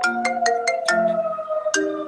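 Phone ringtone playing a melody of marimba-like struck notes, heard over a video call from an unmuted microphone. There is a quick run of about eight notes, a pause, then more notes near the end.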